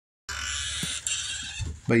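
The sound is cut to dead silence, then comes back about a quarter second in as a steady hissing noise. A man's voice starts just before the end.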